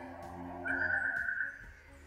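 Soft sustained background music with a high, warbling, whistle-like note held for about a second in the middle.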